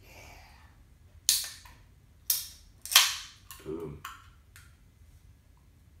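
A carbonated aluminium energy-drink can (Bang Miami Cola) being cracked open: sharp cracks about a second apart, each trailing off briefly, the loudest about three seconds in as the tab pops. A few smaller clicks follow.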